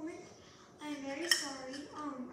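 A single sharp clink of a utensil against a container about a second in, over a girl's sung or spoken voice.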